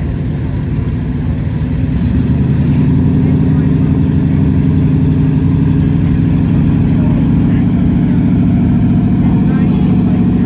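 1984 Ford F-150 street-legal pulling truck's engine running as the truck rolls slowly, getting louder about two seconds in and then holding steady.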